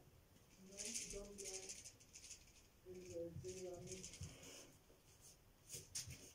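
Faint, quiet talking, too low to make out words, in two short spells.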